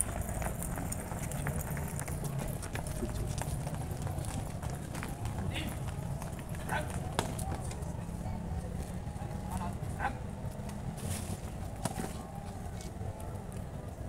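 Footsteps of a group running on bare earth, scattered short scuffs and thuds over a steady low background rumble and faint voices.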